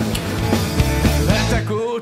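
Rock music playing, with a voice coming in near the end.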